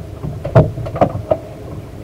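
Small waves slapping and splashing against the fibreglass hull of a small boat: a few irregular knocks, the loudest about half a second in, over a low steady wash of water.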